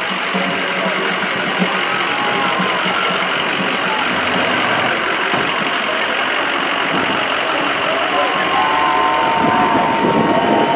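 A pickup truck's engine runs at a slow parade crawl while towing a float, under indistinct crowd voices, with a few higher pitched calls near the end.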